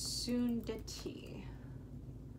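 A woman's voice, soft and breathy: a hissing "f" and a short hesitant syllable as she tries to say "fecundity" and stops, then quiet room tone with a steady low hum.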